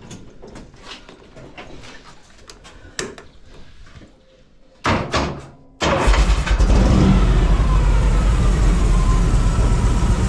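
Harley-Davidson Panhead V-twin motorcycle engine being started: light clicks at first, a short burst of cranking about five seconds in, then the engine catches and runs loud and steady.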